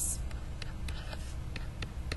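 A pen stylus writing on a tablet computer's screen: light, scattered ticks and scratches of the pen tip as characters are written, over a low steady hum.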